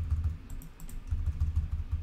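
Computer keyboard keys pressed in quick runs: a short burst of strokes at the start and another lasting about a second in the middle.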